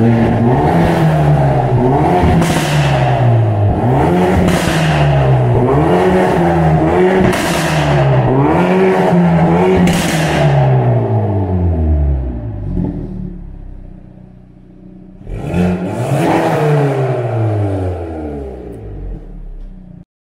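Hyundai Excel with a swapped-in Veloster N turbocharged 2.0-litre four-cylinder engine, revved repeatedly while stationary: about five quick blips roughly two seconds apart, then the revs fall to idle. Near the end there is one more blip that dies away.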